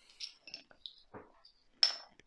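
Faint small metallic ticks and tinkles from a beer bottle's metal crown cap and bottle opener just after the bottle is opened. About two seconds in comes one sharp, ringing clink as the metal is set down on the table.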